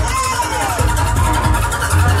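Footwork music played loud over a club sound system: pulsing heavy bass under chopped, pitch-bending samples that slide down in pitch.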